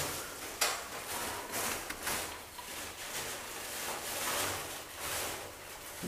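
Paintbrush swishing over a cornice molding in repeated short strokes, a few a second, laying on a coat of mustard-coloured patina glaze.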